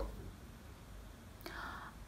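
Quiet room tone with a faint low hum, then a short intake of breath near the end.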